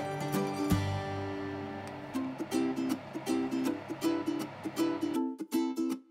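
Background music: a light tune on plucked strings, with held chords at first and then short repeated notes from about two seconds in.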